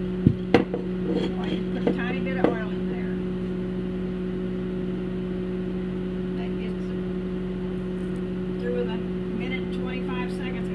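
Microwave oven running with a steady low hum while it heats frozen sausage. In the first seconds there are a few sharp clicks and knocks as a glass oil bottle is handled and set down on the tile counter.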